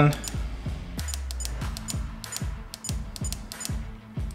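Background music with a steady beat of low thumps about twice a second, and a scatter of light, sharp clicks over it.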